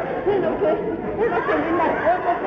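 Several people talking at once, a babble of overlapping voices.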